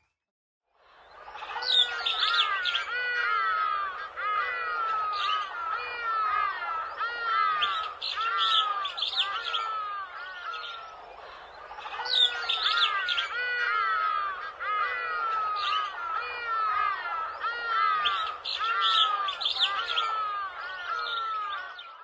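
Birds chirping, a busy run of short falling calls that starts about a second in after a moment of silence. The same stretch of birdsong repeats after about ten seconds, as a loop.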